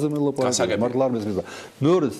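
Only speech: a man talking in Georgian, with a short pause near the end.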